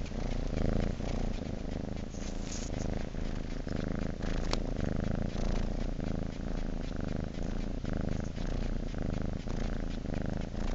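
Calico house cat purring steadily close up, the purr swelling and easing with each breath about once a second.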